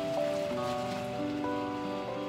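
Acoustic guitar and electronic keyboard playing a slow instrumental, held notes changing every half second or so over a soft, even hiss.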